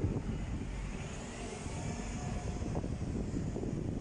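Red double-decker bus driving past on a city street: steady engine and tyre rumble, with a faint high whine swelling and fading in the middle.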